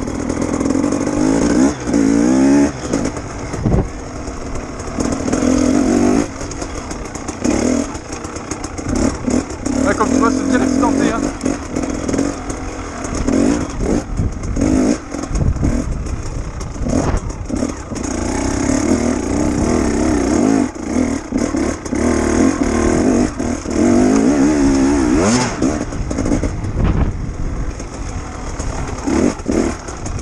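KTM enduro motorcycle engine ridden over rough ground, its revs rising and falling again and again with constant throttle changes, with frequent knocks and rattles from the bumps.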